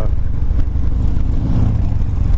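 Motorcycle engine running as the bike rides along at steady speed, heard as a heavy, steady low rumble.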